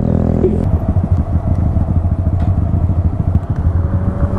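Honda Grom's small single-cylinder engine running under way as the motorcycle rides in traffic, a steady, rough low rumble.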